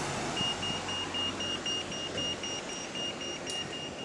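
Rapid electronic beeping at one high pitch, about four beeps a second, starting just after the opening, over the steady noise of street traffic.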